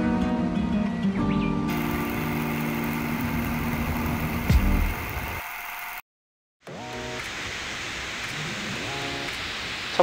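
Background music with held notes that fades out about five seconds in, a moment of dead silence, then a new passage of music over a steady hiss.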